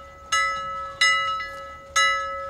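Bell-like chime sting: bright struck notes sound three times, roughly every 0.7 s, each ringing and fading, over one steady held tone.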